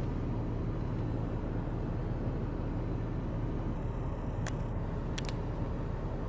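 Car engine idling, heard from inside the stopped car's cabin as a steady low hum, with a few faint clicks about four and five seconds in.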